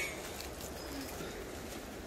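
Quiet rainforest background with a faint bird call.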